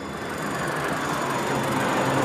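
A rushing, rumbling noise that swells steadily louder, a transition sound effect laid under an edited cut.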